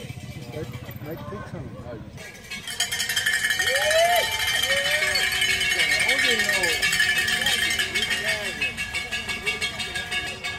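Cowbells shaken fast and continuously, starting about two seconds in, with spectators' shouts and calls underneath.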